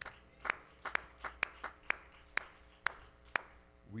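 A single person clapping slowly and steadily, about seven sharp claps at roughly two a second.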